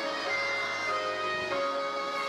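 Violin playing a slow melody of held notes, each changing to the next about every half second.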